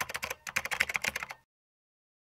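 Computer keyboard typing sound effect: a quick run of key clicks lasting about a second and a half, then it stops dead.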